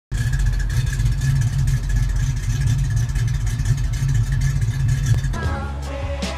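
A 1966 Mustang's 289 V8 running through Flowmaster exhaust, heard at the twin tailpipes as a loud, steady low rumble. About five seconds in it cuts off and gives way to music with a beat.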